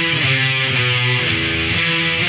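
Heavy metal studio recording: distorted electric guitars and bass play a riff of held chords that shift pitch about every half second, with a cymbal hit early on.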